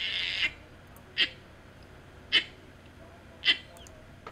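Short breathy voice sounds: a longer one that ends about half a second in, then three brief ones about a second apart.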